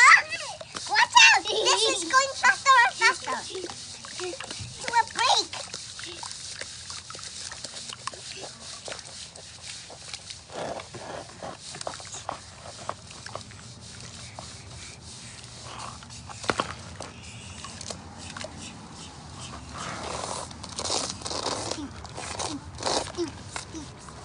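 Hands squishing and patting wet sandy mud, many small irregular wet squelches and slaps, with a little water sloshing. Children's laughter and voices in the first few seconds.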